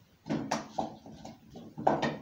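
Several sharp knocks and clatters of cookware being handled at a kitchen stove, the loudest just before the end.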